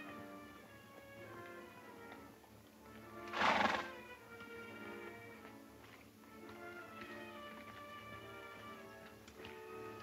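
Background film score playing steadily, with a horse whinnying once, loudly, about three and a half seconds in.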